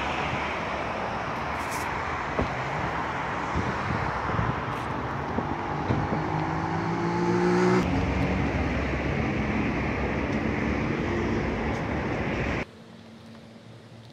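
Road traffic: cars passing on a city avenue, one engine rising in pitch as it accelerates about five to eight seconds in. Near the end the traffic noise cuts off sharply to a much quieter background.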